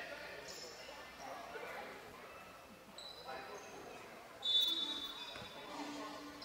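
Basketball gym during a game: a ball bouncing on the hardwood floor and voices around the hall. Several short high-pitched squeaks; the loudest starts sharply about four and a half seconds in.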